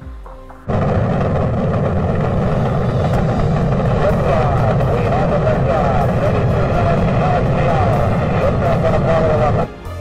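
Saturn V rocket engines at liftoff, heard from old launch film: a loud, steady, dense rumble that cuts in about a second in and cuts off abruptly just before the end.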